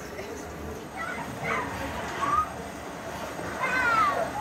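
A few short, high calls that bend in pitch, about a second apart, over a steady background noise.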